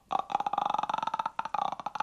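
A man's drawn-out, croaking vocal noise made with his mouth wide open: a rapid rattling creak held at one pitch, with one short break a little past halfway.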